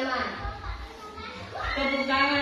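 Children's voices in a classroom over background music; the music's held notes come back in strongly near the end.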